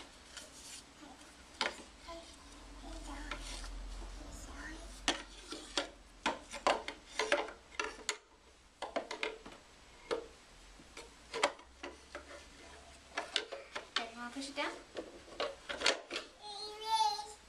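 Irregular taps, knocks and rubbing from hands handling a toddler's wooden-slatted walker wagon and a board book. The sounds come as scattered short clicks with a softer stretch of rubbing a few seconds in.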